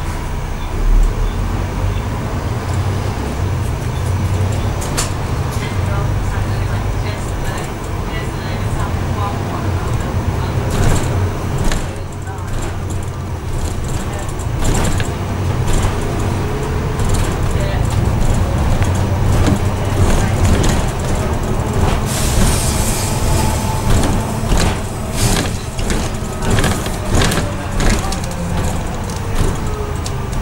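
Double-decker bus running on the road, heard from inside on the upper deck: a steady low engine drone with frequent rattles and knocks from the bodywork and fittings, growing busier in the second half.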